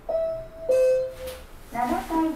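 Elevator car's electronic announcement chime: two notes, the second lower, starting about two-thirds of a second apart and each ringing out briefly. A recorded Japanese voice announcement begins near the end.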